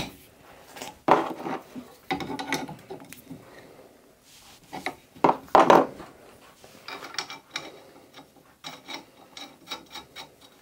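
Brass pipe fittings being screwed together and turned with an adjustable spanner: irregular bouts of metal scraping and clinking as the threads are worked, loudest about halfway through.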